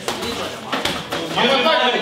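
Voices of people around a boxing ring calling out, loudest in the second half, with a few sharp knocks in the first second.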